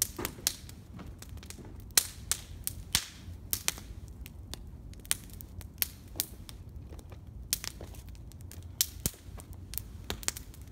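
Wood campfire crackling in an open fire pit, with sharp, irregular pops and snaps every second or so, a few of them loud.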